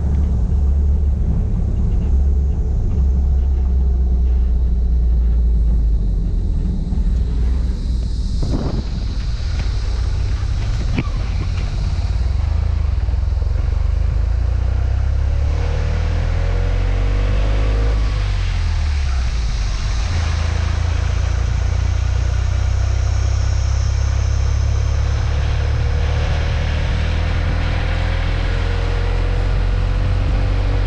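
Wind rumbling on the microphone with the engine of a moving small goods pickup truck, heard from outside its cab. The engine note changes pitch partway through and climbs steadily near the end, with a couple of short clicks along the way.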